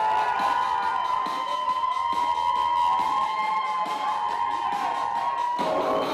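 Wedding guests cheering and whooping over a music intro: a held high synth chord with a quick, even ticking beat. Just before the end the chord stops and the song's lower notes begin.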